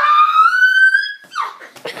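A child's long, high-pitched shriek that rises slowly in pitch for about a second and then breaks off, followed by short vocal yelps.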